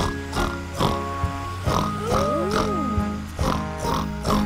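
A cartoon pig's voice snorting 'oink', a string of short snorts in time with the beat over the bouncy backing music of a children's song.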